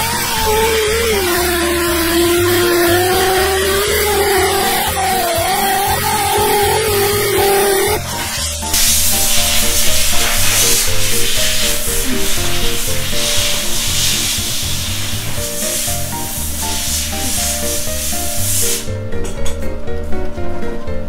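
Small pneumatic belt sander running on the aluminium wheel rim of a Honda CBX400F, a whine whose pitch wavers as the belt is pressed against the metal; it stops about eight seconds in. A loud steady hiss follows and lasts about ten seconds, with background music with a steady beat throughout.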